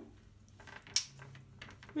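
A single sharp click about a second in, with faint scattered rustling around it.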